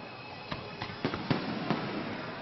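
Aerial fireworks going off: several sharp bangs and crackles, about five in two seconds, over a steady hiss.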